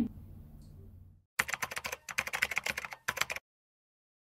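Computer keyboard typing sound effect: a quick run of keystrokes lasting about two seconds, starting about a second and a half in after a brief dropout, with a short pause near the end before it cuts off suddenly.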